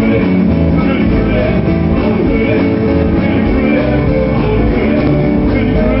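Rock band playing live at steady full volume: guitar and drums through the stage sound system.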